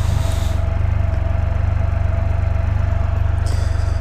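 Can-Am Spyder F3's Rotax 1330 inline three-cylinder engine idling steadily at about 1000 rpm, with an even pulse, as the trike sits stopped.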